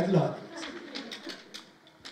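Speech only: a man's voice draws out the end of a word at a steady pitch and trails off. A pause with faint room noise and a few soft ticks follows.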